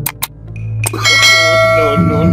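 Two short clicks, then a sharp strike about a second in followed by a bell-like metallic ringing. A steady low hum runs underneath.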